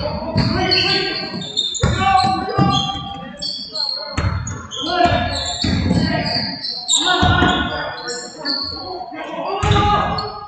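Basketball game sounds in a large, echoing gym: the ball bouncing on the hardwood floor, short high squeaks of sneakers, and players and coaches shouting, with no clear words.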